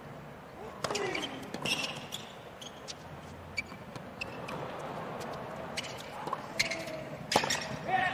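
Tennis rally on a hard court: a series of sharp pops from the ball being struck by racquets and bouncing, roughly one a second, over a low crowd murmur.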